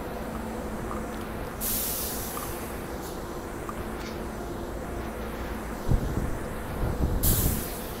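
SEPTA regional rail train standing at the platform: a steady low hum, with two short air hisses, one about one and a half seconds in and one near the end. A few low thumps come just before the second hiss.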